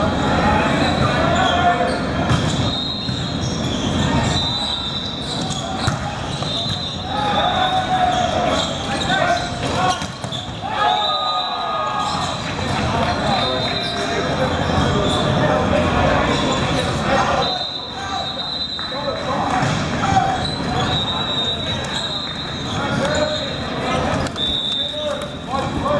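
Indoor volleyball game in a large, echoing hall: players and spectators calling out, and the ball struck now and then. A steady high-pitched whine comes and goes throughout.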